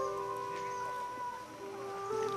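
Background music of slow, long-held notes in soft chords, with a change of note near the end.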